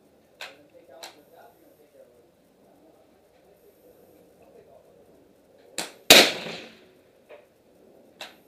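A suppressed bolt-action rifle, a Savage Model 10 with a Gemtech Quicksand suppressor, firing a single shot about six seconds in: a sharp report with a short fading tail, just after a fainter crack. Two faint sharp clicks come in the first second.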